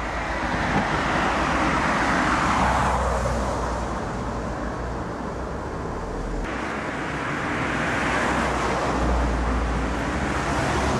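Road traffic passing on a wet road: a tyre hiss over a low rumble that swells and fades, loudest about two seconds in and again near the end.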